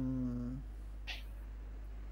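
A man's short held hum or drawn-out vowel, level in pitch and lasting about half a second, then a brief breath-like hiss about a second in, over a steady low hum.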